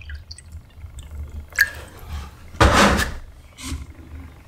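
Water poured from a plastic jug into a plastic measuring cup, trickling and dripping faintly. This is followed by a loud handling noise about two and a half seconds in, and a smaller one shortly after, as the containers are moved.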